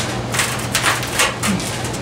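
A man heaving on a breaker bar against an anode rod seized tight in an electric water heater, heard as a run of short noisy strokes a few times a second as he strains and the tank shifts. A steady low hum from a running furnace lies underneath.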